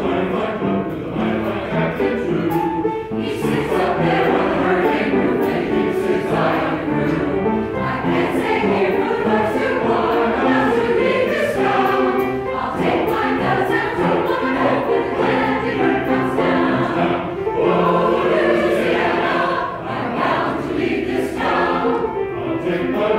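A men's choir singing, many voices together in a sustained, continuous passage.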